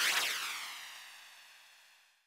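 A noisy, shimmering sound effect that swells up, peaks at the start and fades out over about two seconds, with a sweep falling in pitch through it.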